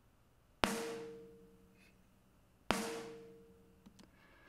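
A recorded snare drum struck twice, about two seconds apart, each hit ringing out and dying away. It is played back through the iZotope Ozone Vintage Compressor set to a −40 dB threshold at 5:1 with auto gain off, so the heavily compressed snare sounds quiet.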